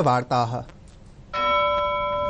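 A bell-like broadcast chime strikes about a second and a half in and holds several ringing tones that slowly fade: the sting that opens a news segment. Before it, the end of a man's spoken sentence.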